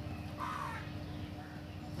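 A bird calls once, a short falling call about half a second in. It is faint over a steady low hum.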